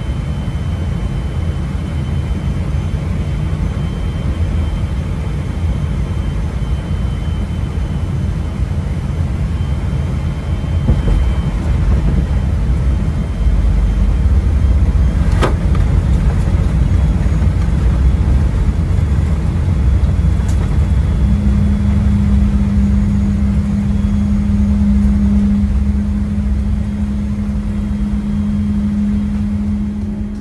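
Cabin noise of a Boeing 777-300ER airliner landing: a steady low rumble on short final, growing louder from touchdown, about twelve seconds in, as the jet rolls out and slows on the runway. A single sharp click comes about fifteen seconds in, and a steady low hum joins from about twenty-one seconds.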